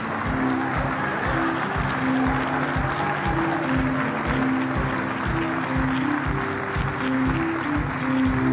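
Large audience applauding over walk-on music with a steady beat.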